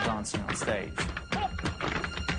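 Tap dancing on a stage: quick, sharp taps of the dancers' shoes on the floor, several a second, over music.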